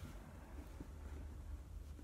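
Quiet room tone with a faint, steady low hum and no distinct sound.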